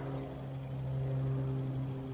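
A steady low hum over a faint even hiss, with no distinct events.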